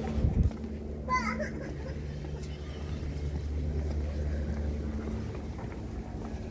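Indistinct voices of passersby, with a brief higher, wavering voice about a second in, over a steady low rumble.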